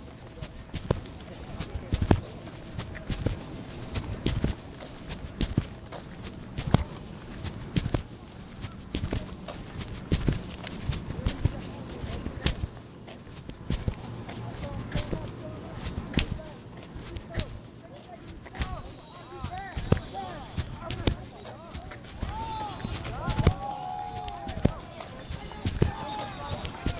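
Phone microphone rubbing and knocking against clothing as its carrier walks: irregular thumps and rustles. Indistinct voices can be heard in the background, mostly in the second half.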